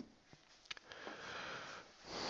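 Whiteboard marker tapping lightly on the board three times, then about a second of soft hiss.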